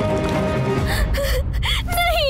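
Background music with held notes, then from about halfway through a woman's sobbing gasps and whimpers.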